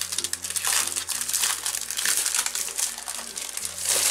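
Clear plastic wrapping around a pad of scrapbook paper crinkling and crackling steadily as it is opened and pulled back by hand.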